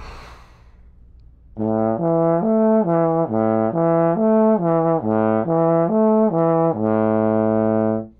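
Trombone playing a lip slur in second position: after a breath in, it slurs A, E, A up and back down three times without tonguing, ending on a low A held for about a second.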